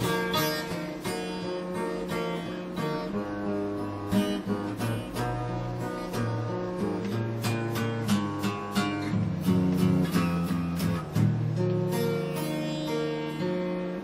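Instrumental passage of a song: acoustic guitar strumming and picking, with no singing.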